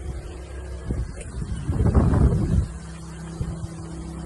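Low steady hum of a motor running, with a louder low rumble swelling and fading about two seconds in.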